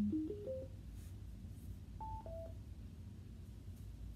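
Electronic tones from a handheld phone: a quick rising run of four short notes at the start, then two falling notes about two seconds in.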